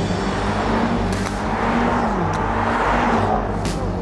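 A car accelerating away down a runway, its engine note running under a wide rush of engine and tyre noise, the pitch dipping once about two seconds in.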